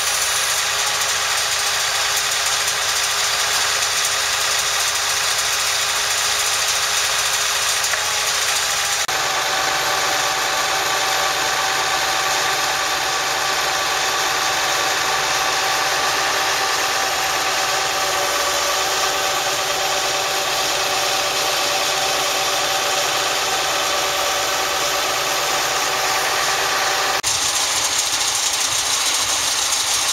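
An engine running steadily at idle. Its tone changes abruptly about nine seconds in and again near the end.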